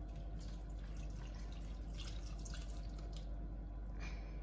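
Beaten egg mixture poured quickly from a bowl into dry cake mix in a mixing bowl: a faint liquid pour with a few soft drips.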